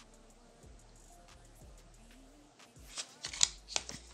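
Mostly quiet, then a quick run of small sharp clicks and rustles near the end as a nail tip with a glued-on piece of paper is handled and turned.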